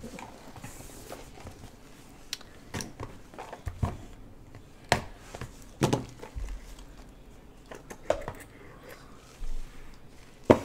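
A cardboard trading-card box being handled and opened: scattered light knocks and taps, about six spread through, as the box is picked up off the table and its lid worked off.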